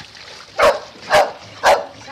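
A small dog yapping sharply three times, about half a second apart.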